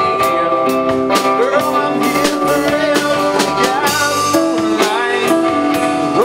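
Live band playing: electric guitars over a steady drum-kit beat, with notes bending up in pitch now and then.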